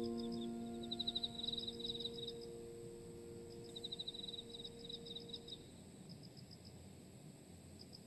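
A soft piano chord dies away over the first few seconds, leaving a quiet pause. Faint, high chirping trills from a nature-sound layer come and go through it.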